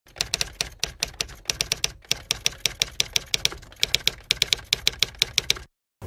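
Typewriter keystroke sound effect: a fast, uneven run of key clicks with a brief pause near two seconds, stopping shortly before the end.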